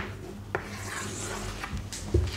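Chalk scraping and rubbing on a blackboard as letters are finished and an oval is drawn around the answer, with a sharp tap about half a second in.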